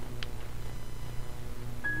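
Steady low hum with a single click a fraction of a second in. Near the end, the Windows XP shutdown chime begins: a clear, high note that steps down to lower notes.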